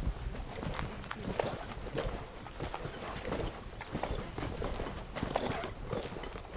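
Footsteps on a gravel and dirt yard: uneven knocks and crunches, a step every so often, as someone walks with the camera.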